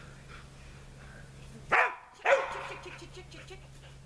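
A dog barks twice, about two seconds in, half a second apart; the second bark is longer and louder.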